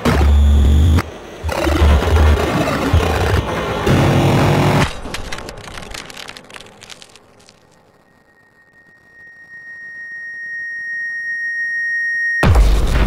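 Experimental electronic music: a dense, bass-heavy passage cuts out about five seconds in and trails off into fading crackle, then a single steady high tone swells gradually louder toward the end.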